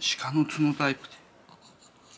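A man's voice speaking briefly for about the first second, then quiet room tone.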